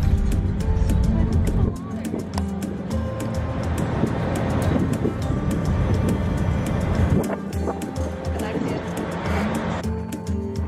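Background music, with a deep rumble under it for about the first two seconds.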